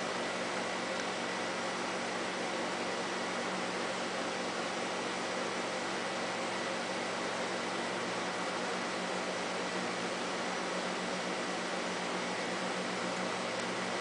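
Steady hiss with a faint low electrical hum and a thin high tone, unchanging throughout, with no ticking.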